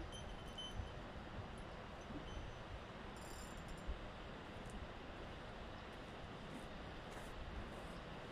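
Steady faint outdoor background noise, a low rumble under an even hiss, with a couple of soft bumps about a second in and near four seconds.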